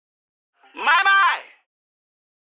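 A single short vocal phrase from a song's vocal track, played back through the Soundtoys Devil-Loc distortion plug-in: thin and telephone-like with the low end filtered out, a distorted signal blended over the clean one. It lasts just under a second, starting about half a second in, its pitch rising and then falling.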